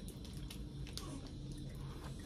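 Quiet room tone: a low steady hum with a few faint soft clicks.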